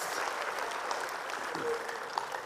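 Church congregation applauding, the clapping slowly thinning out.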